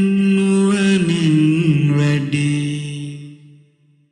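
Sinhala Buddhist loving-kindness (metta) chant: a voice holding a long drawn-out syllable that steps down in pitch twice and fades away just before the end.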